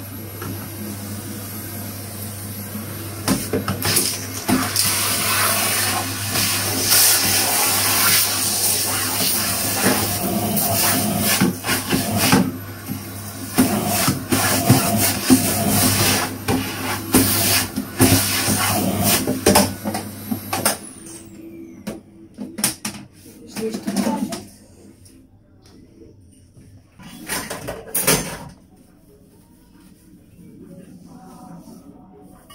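Canister vacuum cleaner running, with a steady hum and high whine and frequent knocks and clatter as the hose works along the kitchen units. About two-thirds of the way through it is switched off and the motor's whine winds down, followed by a few separate knocks.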